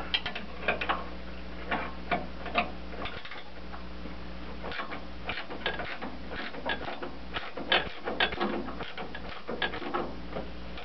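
Wrench clicking in short, irregular runs of ratchet clicks as a bolt at the tractor's clutch-brake pedal pivot is worked loose, over a steady low hum.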